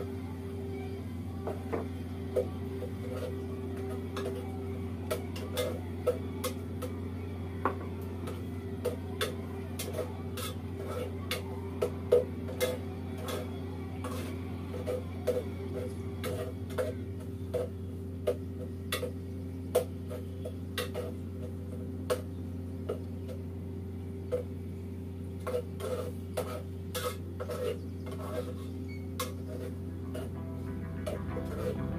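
A metal ladle clinking and knocking against a cooking pot as a stew is stirred, in short irregular taps throughout, over a steady low hum.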